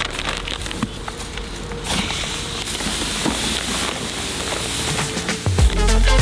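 Fine granular fertiliser prills pouring from a bag into a plastic spreader hopper, a steady hiss with scattered ticks. Music with a heavy bass beat comes in near the end.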